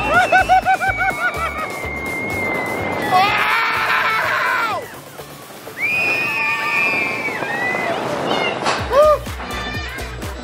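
Roller coaster riders screaming and yelling in long, high, held cries, with a short lull about five seconds in, over background music with a steady beat.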